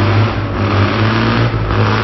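Rally car engine running hard at steady high revs through a tight hairpin, with tyre and gravel noise.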